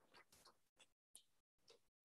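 Near silence: faint room tone with a few tiny clicks and brief moments where the sound drops out entirely.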